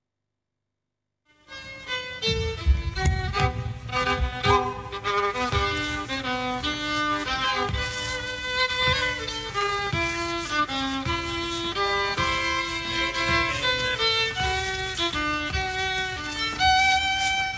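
Solo folk fiddle playing a waltz tune for couple dancing. It comes in suddenly about a second and a half in, after dead silence.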